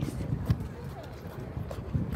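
Footsteps on a paved promenade, heard from the walker's own handheld camera, with a sharp knock about half a second in and faint voices of passers-by.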